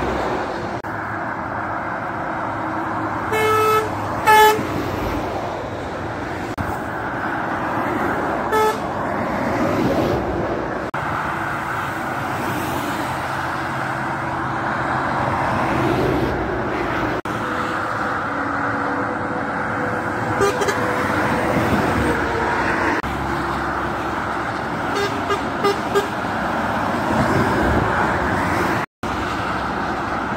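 Steady motorway traffic of lorries and cars passing below, with short truck air-horn toots cutting through: two blasts a few seconds in, another shortly after, and a scatter of brief toots later on.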